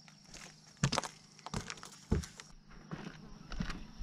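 A few footsteps and short knocks, the clearest about a second in and just after two seconds, over steady chirping of crickets.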